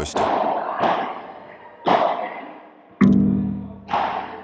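Background music: single piano notes struck a few times, each ringing and fading away.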